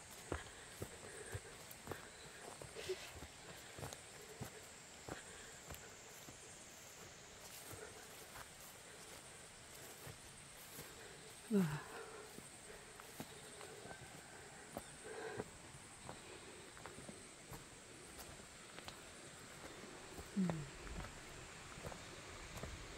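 Faint footsteps and rustling of someone walking on a dirt path through grass, with a steady faint high hiss behind. A short falling voice-like sound about halfway through is the loudest thing, and a weaker one comes near the end.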